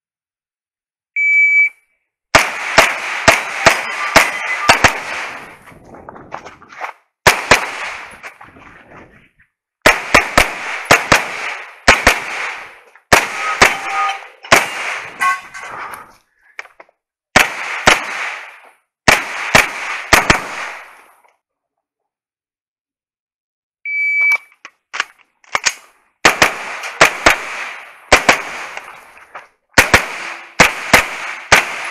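A shot timer gives one short electronic beep, then a pistol fires in quick pairs and strings of shots with brief pauses between them, loud and close from the shooter's own position. Near the end a second timer beep starts another run, again followed by rapid pistol shots.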